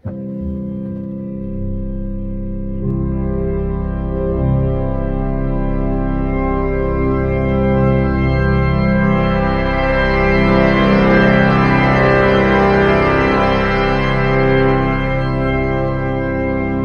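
Rieger pipe organ holding sustained chords while the crescendo pedal is slowly advanced, adding stops step by step: the sound grows steadily louder and brighter, with more upper pitches joining from about three seconds in and the fullest sound near the middle. The crescendo changes tone colour as well as volume.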